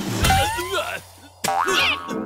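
Cartoon sound effect: a springy boing with a wobbling, gliding pitch, then after a short gap a character's vocal cry, over background music.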